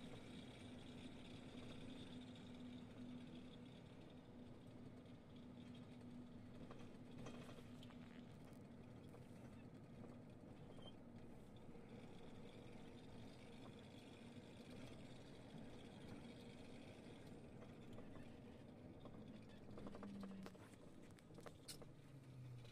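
Faint, steady drone of a lorry's engine and tyres, heard from inside the cab while driving.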